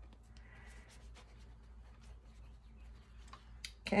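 Faint scratchy rubbing of a flat paintbrush smoothing wet paint across a paper journal page, with a few faint light ticks over a low steady hum.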